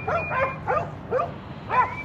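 A dog whimpering: about five short, high-pitched whines, each rising and falling, roughly two a second.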